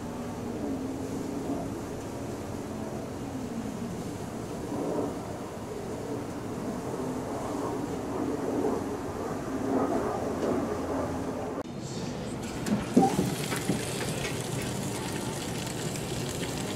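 Steady low background rumble. After a cut about twelve seconds in, burgers sizzle on a grill with a steady hiss.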